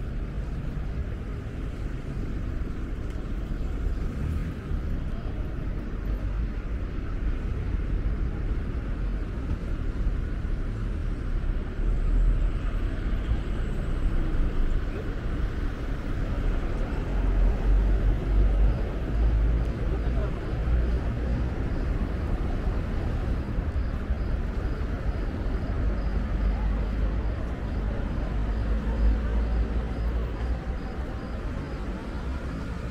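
Outdoor city street ambience: road traffic going by, with a steady noisy hiss and a low rumble that swells about twelve seconds in and again a little past the middle.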